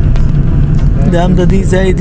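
Steady low rumble of a moving car, engine and road noise, with a man starting to speak about a second in.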